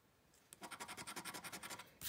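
A coin scratching the latex coating off a lottery scratch-off ticket, in rapid back-and-forth strokes of about ten a second. The scratching starts about half a second in and stops just before the end.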